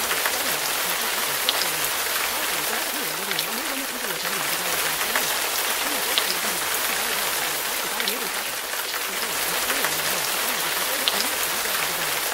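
Steady rain sound with a faint voice wavering underneath it, its words not clear.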